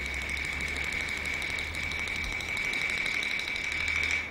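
Kunqu opera accompaniment holding a single long, high, steady note over a low hum.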